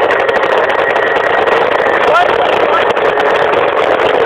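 Aprilia SR50 scooter's 50cc two-stroke engine running steadily at a constant speed, loud and unchanging.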